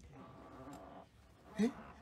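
A pause in a man's talk: faint background hiss, then a short questioning "Eh?" about one and a half seconds in.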